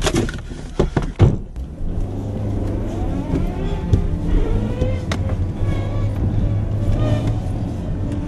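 A few sharp knocks and clicks, then about two seconds in a car engine starts running steadily, heard from inside the cabin.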